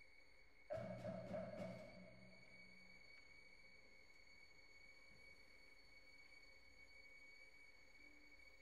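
A very quiet passage of contemporary orchestral music, near silence with a faint steady high tone, broken less than a second in by a sudden soft orchestral chord with a handful of quick percussive strikes that fades away within about two seconds.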